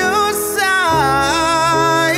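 A man singing a long, held vocal line that bends and glides in pitch, accompanied by grand piano chords, with a new chord struck about a second in.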